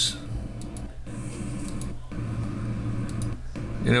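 Steady low hum and faint noise from a recording played back on a computer, cutting out briefly three times as the playback is skipped ahead, with a few faint clicks.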